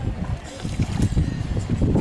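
Wind buffeting the microphone aboard a moving boat, an uneven low rumble that rises and falls in gusts.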